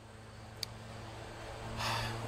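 A man's audible in-breath near the end, taken just before speaking, over a steady low hum, with a single faint click about halfway through.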